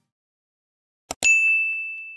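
Two quick mouse-click sound effects about a second in, then a single bright notification-bell ding that rings on and slowly fades: the bell-click sound of an animated subscribe button.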